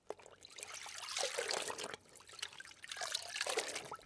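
Water sound effect of a rowing boat's oar splashing and trickling through water, in two spells of about a second and a half each.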